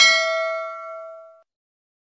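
A single bell 'ding' sound effect, the notification-bell chime of an animated subscribe button. It is struck once, rings with several bright tones for about a second and a half, and then stops abruptly.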